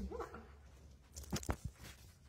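Groundhog digging and scratching in dry leaf litter, with a few sharp scratches about a second and a half in, after a short low vocal sound right at the start.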